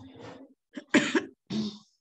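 A person coughing, with two short, loud coughs about a second in and a softer throat sound just before them.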